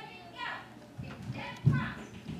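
Children's voices chattering in the background, with one voice louder near the end.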